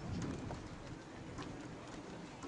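Outdoor ambience: a steady low rumble with a few faint, scattered clicks.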